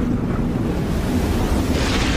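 Cinematic logo-animation sound effects: a loud, steady low rumble with a whoosh swelling near the end.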